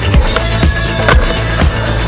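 Electronic dance music with a steady beat, over a skateboard rolling on asphalt, with a sharp clack of the board about a second in.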